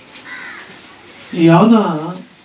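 A man's voice at a microphone: one loud, drawn-out vocal sound in the second half that rises and then falls in pitch.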